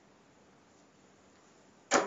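Near silence of room tone, then a single sharp, loud impact near the end that dies away within a fraction of a second.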